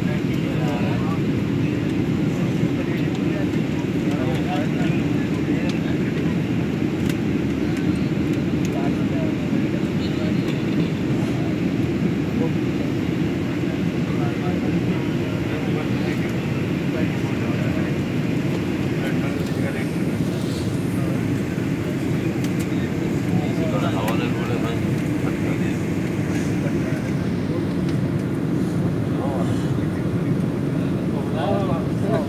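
Steady low rumble of an airliner cabin, the even noise of the aircraft heard from a passenger seat, with faint voices of other passengers talking.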